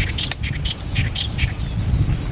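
Birds calling in short, repeated chirps, several a second, over a steady low rumble.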